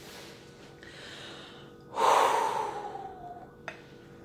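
A man breathing: a faint intake of breath, then a loud, forceful exhale about two seconds in that falls in pitch and trails off. A short click near the end.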